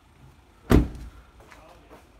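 A Fiat Punto Evo's car door being shut: one solid slam about three quarters of a second in.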